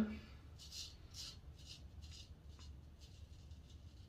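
Henckels Friodur stainless-steel straight razor scraping through shaving lather and stubble on the cheek in short, faint strokes, about two to three a second.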